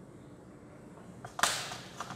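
Chalk drawing a stroke on a blackboard: one sudden scratchy scrape about one and a half seconds in that fades over half a second, over faint room noise.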